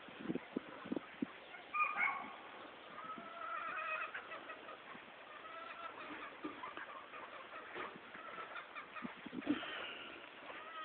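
Gamefowl roosters calling and clucking at intervals, several birds at different pitches, the loudest call about two seconds in. Short low thumps come near the start and again near the end.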